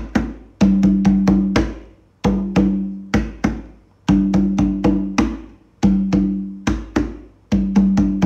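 Conga drum played with bare hands in a simple capoeira barravento rhythm: repeating short phrases of ringing open tones mixed with muted closed strokes, a new phrase about every one and a half to two seconds.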